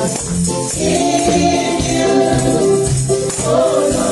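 Live praise and worship song: women's voices singing sustained notes into microphones over accompanying music, with tambourines jingling.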